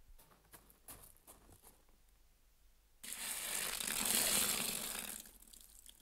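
Water poured from a bucket into a stone trough: a rushing splash of about two seconds, starting about three seconds in and fading out, after a few faint taps.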